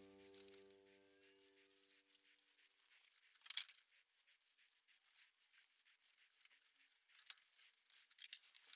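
Near silence: a held background-music chord fades out in the first second, then a few faint scratches and light clicks of a pencil and a hacksaw blade on a wooden board. The loudest is a brief scrape about three and a half seconds in, with a few more small clicks near the end.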